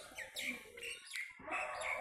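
Faint chirps of small birds in the background: a few short calls spread through the pause.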